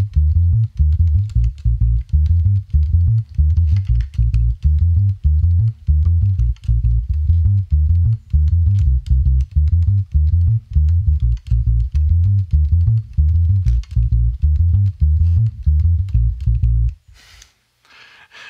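1961 Gibson EB-0 electric bass playing a busy reggae bassline, every note plucked separately with no hammer-ons, the notes short and with little sustain. The playing stops about seventeen seconds in.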